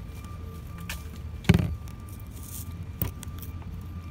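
Rustling handling noise at a parked car, with a loud thump about a second and a half in and a sharp click about three seconds in.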